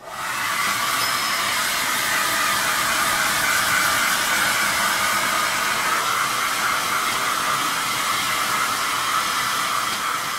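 Hair dryer coming on and then blowing steadily while drying a dog's coat.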